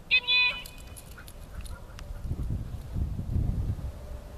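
A single short, loud, high-pitched call, about half a second long, serving as the recall signal to a dog lying out in the field. It is followed by a low, soft thudding rumble in the second half as the dog runs in.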